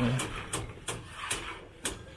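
A hammer knocking lightly and regularly, about five short strikes at roughly two a second, on a block-house building site.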